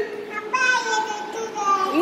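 A small child's voice in a drawn-out, sing-song call, held on long notes for about a second and a half.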